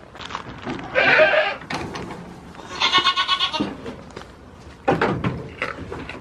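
Goat bleating twice, two loud calls about two seconds apart. A few short knocks and rustling follow near the end.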